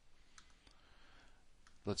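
About three faint computer mouse clicks in a quiet pause, with a man's voice starting near the end.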